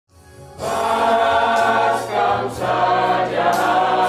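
A church vocal group singing a Karo-language hymn in held chords over a steady bass accompaniment, starting about half a second in.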